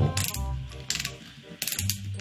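BOA lacing dial ratcheting as it is turned by hand to tighten its wire lace, giving a few irregular clicks.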